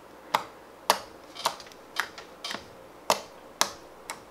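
Fingertips poking into soft homemade slime, each press giving a sharp pop, about one every half second, seven in all.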